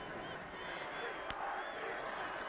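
Stadium crowd noise on a football broadcast, a steady din of many voices, with one sharp click a little over a second in.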